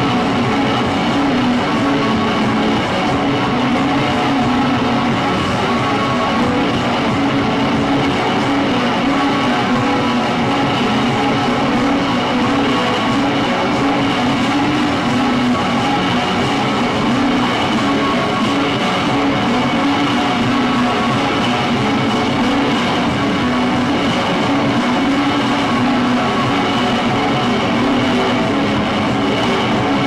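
Experimental noise band playing live through synthesizers, effects units and electric guitar: a dense, steady wall of electronic noise with a held low drone and a high whine over it.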